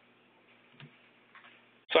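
Faint hiss with two soft clicks about half a second apart, then a speaking voice cuts in just before the end.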